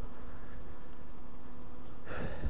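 Honeybees from nearby hives buzzing: a steady hum with an even pitch.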